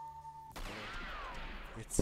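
Slot game duel-feature sound effects: a held tone gives way, about half a second in, to a swelling whoosh with a whistle that bends up and then down, ending in one sharp, loud gunshot right at the end.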